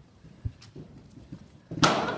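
A horse's hoofbeats on a sand arena surface as it canters up to a show jump, with a few soft thuds and then a louder thud near the end as it lands over the fence.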